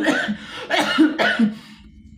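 A man coughing in a string of short bursts into a tissue held over his mouth, falling quiet near the end.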